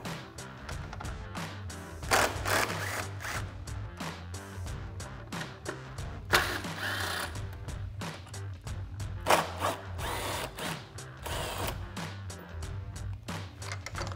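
Cordless impact driver with a socket running in several short bursts, backing out the headlight mounting screws, over background music.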